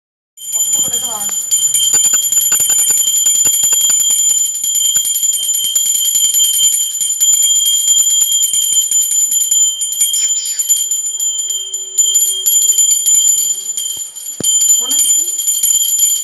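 Small brass hand bell shaken continuously, its clapper striking many times a second and keeping up a steady high ringing tone.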